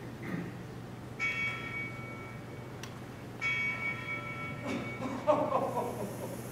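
A bell struck twice, each stroke ringing for about a second and a half before fading, the second following about two seconds after the first. It is a clock-bell cue in a stage play. A voice is heard briefly near the end.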